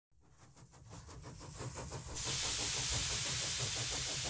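Steam engine sound: a low rumble with rapid, even beats fades in, then a steady hiss of escaping steam cuts in about halfway and holds.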